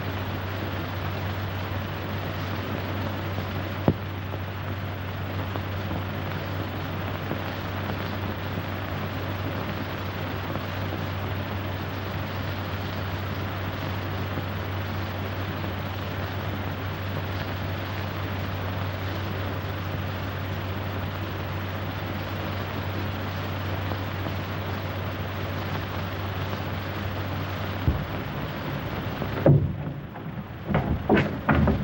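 Steady hiss with a low hum from an old optical film soundtrack, broken by a sharp click about four seconds in and another near the end.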